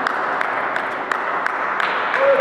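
Table tennis ball clicking sharply off bats and table, several irregular clicks, over the steady din of a busy hall with voices and other games.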